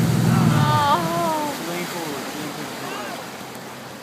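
Motorboat engine running under tow, its drone dropping away about a second in as the throttle comes off, over the churning of the wake and wind on the microphone. Voices call out over it.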